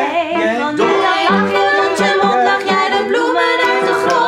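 Several women singing a cheerful pop melody in harmony, rehearsing with upright piano accompaniment.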